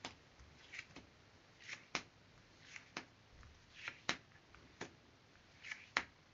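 Tarot cards being drawn one at a time from a deck fanned out on a table: each draw is a short soft slide followed by a sharp tap as the card is set down, about once a second.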